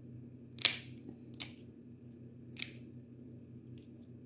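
Plier-style dog nail clippers snipping through a dog's nails: three sharp clicks within about two seconds, the first the loudest, then a faint tick near the end.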